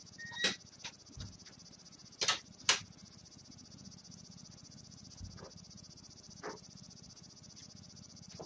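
Several sharp knocks and clicks from someone moving about a room and handling things; the two loudest come close together about two and a half seconds in. Under them runs a steady high-pitched hiss.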